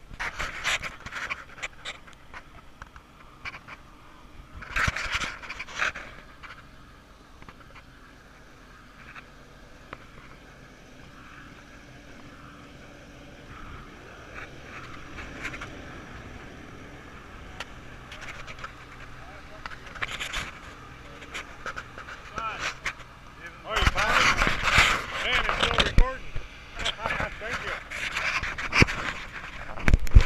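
Muffled rustling and knocking from a GoPro lodged inside a pumpkin, with faint distant voices. Short bursts come near the start and around five seconds in. Over the last six seconds the noise grows loud and jumbled as the pumpkin is handled and picked up.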